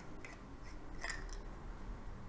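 Faint handling sounds of a large green ebonite fountain pen having its cap unscrewed: light rubbing with a couple of soft clicks, about a quarter second in and again about a second in.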